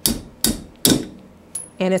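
Steel hammer striking the side of a wood screw's head where it sticks out of a board, three sharp metallic blows a little under half a second apart. The screw, brittle under sideways load, snaps off.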